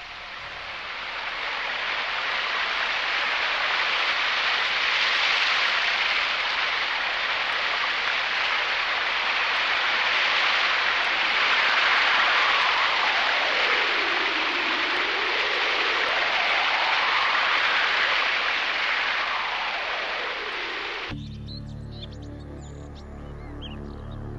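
Steady rushing noise like a waterfall that swells in and holds for about twenty seconds, with a slow sweep dipping and rising through it. About three seconds before the end it cuts off and gives way to the film song's opening music with low sustained tones.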